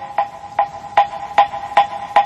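Korean Buddhist wooden fish (moktak) struck in a steady beat, about two and a half hollow, briefly ringing knocks a second, keeping time for sutra chanting.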